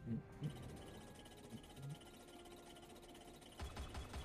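Faint online slot game audio from The Hand of Midas: soft held tones and light chimes as the reels settle, with a regular low beat of about four pulses a second coming in near the end.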